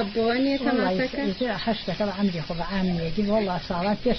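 Speech only: a woman talking steadily in Kurdish.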